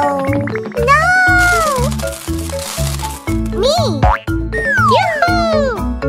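Children's cartoon background music with a bass line of short repeated notes. Over it come sliding cartoon sound effects: swooping rising and falling pitch glides and a whoosh in the first half.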